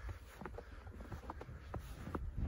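Footsteps crunching through fresh, unswept snow: the squeaky 'ppodeudeuk' crunch of each step, heard as a dense run of small crisp crackles.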